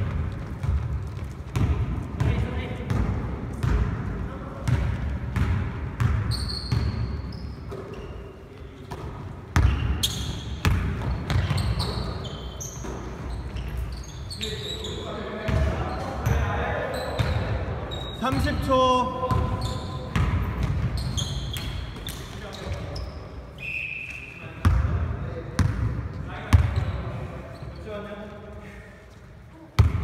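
Basketball bouncing and thumping on a hardwood gym floor during play, with footfalls and short high sneaker squeaks. The sounds echo in a large hall. The loudest thumps come about ten seconds in and twice near the end.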